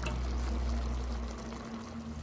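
Pan of green beans simmering in their oily tomato cooking liquid, which is reducing over medium-low heat, with a steady bubbling over a low hum that fades about three-quarters of the way through.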